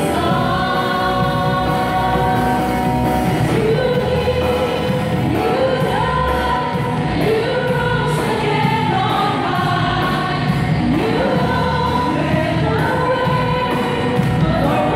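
A woman sings a gospel worship song into a handheld microphone, amplified, over steady musical accompaniment with choir backing vocals.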